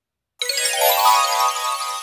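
A short, bright electronic chime, a ringtone-like jingle, used as a page-turn transition sound. It starts suddenly about half a second in and fades away over the next two seconds.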